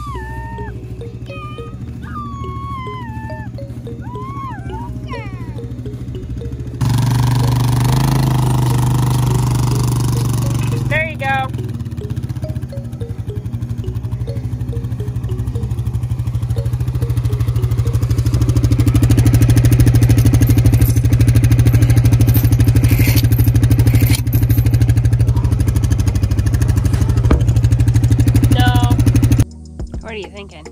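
Four-wheeler ATV engine running steadily as it is driven across pasture. Its low drone starts suddenly about seven seconds in and grows louder through the second half. High calling voices are heard over the first few seconds.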